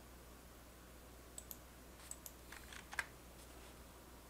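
A handful of faint clicks and taps from a computer keyboard and mouse, scattered over about two seconds, the loudest about three seconds in, over near-silent room tone.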